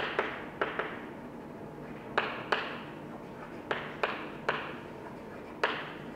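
Chalk tapping against a blackboard as words are written: about nine sharp, irregularly spaced taps, often in close pairs, each fading quickly.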